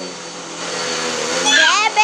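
Vacuum cleaner running with a steady motor hum.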